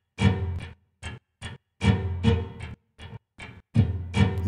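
Percussive hits from the Piano Noir virtual instrument, sampled from an 1879 Guild & Sons square grand piano, played one at a time from a keyboard. There are about nine separate struck sounds, roughly two a second, each dying away quickly with a short ring.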